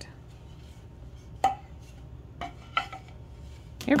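A few light wooden clacks and knocks as pine boards from a child's toy workbench are picked up and bumped together, with a low steady hum underneath.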